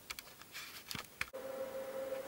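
A few faint clicks and taps from the metal chassis of a valve amplifier being handled, then a faint steady hum that starts abruptly just over a second in.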